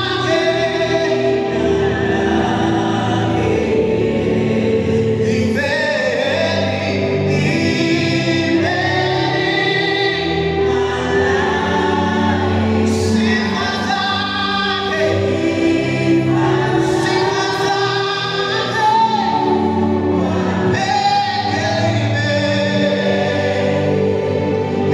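Live gospel choir singing a Swahili hymn: a male lead voice on a microphone with a group of backing singers joining in, continuous and at full volume.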